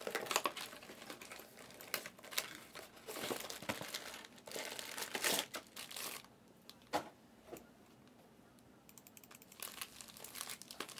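Foil trading-card pack wrappers crinkling as they are handled, in irregular bursts for about six seconds, then a single sharp click about seven seconds in.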